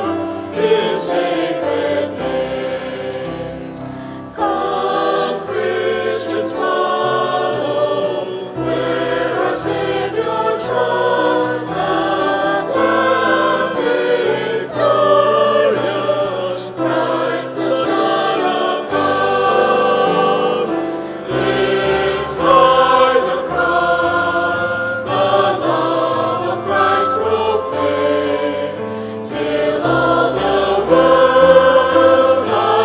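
Choir and congregation singing a hymn in a large reverberant church, with steady held bass notes from instrumental accompaniment underneath the voices.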